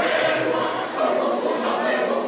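Large mixed church choir singing together in held, sustained notes.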